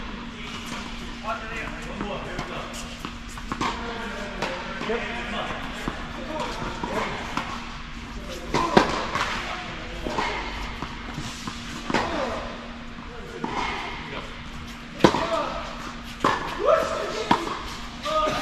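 Tennis balls struck by racquets in a doubles rally on an indoor court: a handful of sharp hits in the second half, the loudest about 15 seconds in, over background voices and a steady low hum.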